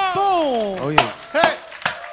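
A man's voice from the live performance calls out in long sliding tones as the song closes, followed by a few sharp knocks: one about a second in and another near the end.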